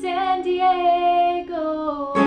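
A woman singing a folk song, holding two long notes, over a sustained chord ringing from an acoustic guitar and ukulele.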